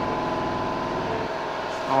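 Steady hum of a paint spray booth's ventilation fan running, with a faint constant whine.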